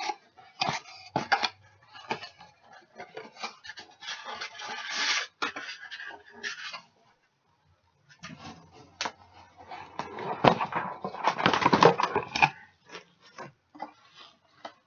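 Handling noise from unpacking a boxed rechargeable water-bottle pump: irregular rustling of packaging with clicks and knocks of plastic parts. It breaks off for about a second midway.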